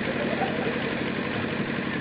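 Steady background noise: an even hiss with a low hum under it, unchanging throughout.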